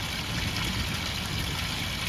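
Garden fountain of stacked wooden barrels, water pouring steadily from one barrel into the next, over a low steady rumble.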